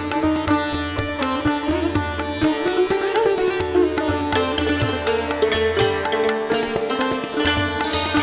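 Indian-style instrumental background music led by sitar, plucked melody notes over a sustained low accompaniment, beginning abruptly.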